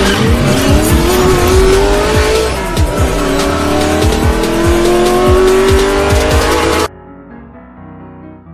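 An intro sound effect of a race car engine revving, its pitch climbing in long sweeps, mixed over electronic music with a heavy beat. It cuts off suddenly near the end, leaving quieter background music.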